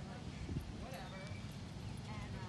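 Outdoor ambience: a steady low rumble on the microphone with faint, distant voices.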